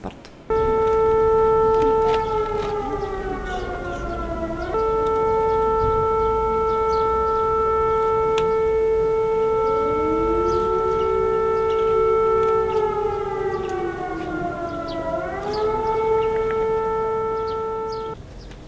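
Civil-defence warning siren wailing: a steady tone that twice sags in pitch and comes back up, with a fainter second siren rising and falling beneath it. It is the public warning system's air-raid alert signal.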